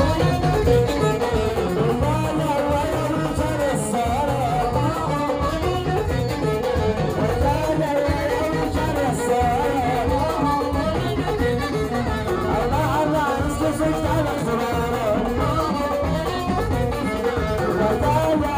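Live Moroccan folk band playing loud through a PA: a steady beat on frame drums under a wavering melody line, with a loutar lute among the instruments.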